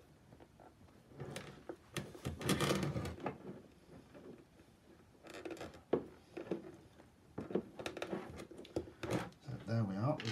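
Low, muttered speech in a small room, mixed with short clicks and rubbing of clear plastic tubing being worked into a port of an acrylic ant nest.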